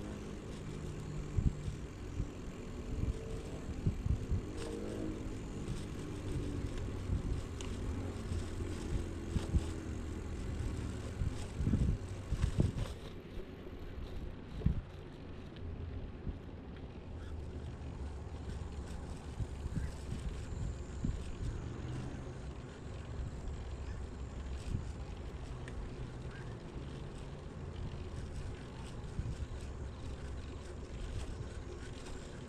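YouBike rental bicycle being ridden along a paved path: a steady low rumble of tyres and wind on the microphone, with occasional knocks from the bike over bumps.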